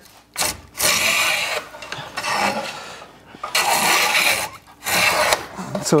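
Stanley No. 8 jointer hand plane taking long strokes along the edge of a figured wood neck blank, the iron shearing off shavings in about four passes of roughly a second each. The freshly sharpened iron is cutting well.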